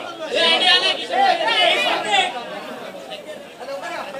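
Chatter of several men's voices talking close by, loudest in the first two seconds and then dropping off.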